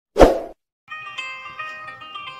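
A single loud hit from an edited-in intro sound effect, sharp at the onset and dying away within a fraction of a second. About a second in, plucked-string music with a melody begins.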